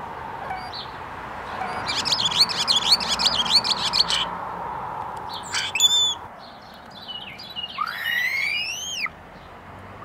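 European starling singing close to the microphone: a rapid chattering warble for about two seconds, a few sharp calls about six seconds in, then one long whistle that rises and falls near the end.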